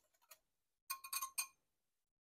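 Wire whisk clinking against a glass bowl while whisking sour cream with hot soup liquid: a quick run of about five light, ringing taps about a second in.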